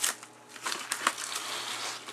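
Thin, cheap plastic cling wrap crinkling and crackling as it is handled and pulled from its box, with a sharp click just at the start.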